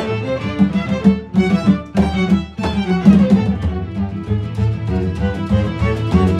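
A samba played by a small ensemble: nylon-string classical guitar with a string quartet of two violins, viola and cello, over hand-drum percussion, with busy rhythmic note attacks throughout.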